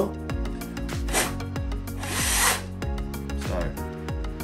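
Aerosol cleaner spray: a short hiss about a second in, then a longer, louder one about two seconds in.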